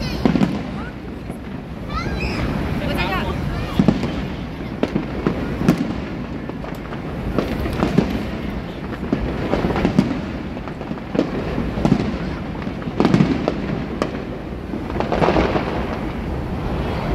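Aerial firework shells bursting overhead in an irregular run of sharp bangs, one after another throughout, over a steady low rumble.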